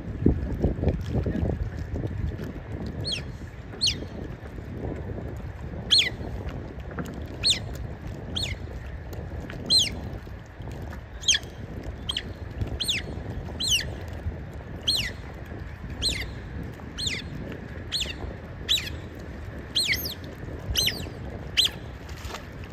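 Smooth-coated otters giving short, high-pitched squeaks that slide down in pitch, repeated roughly once a second from about three seconds in. Under them is a low rumble of wind and lapping water, loudest at the start.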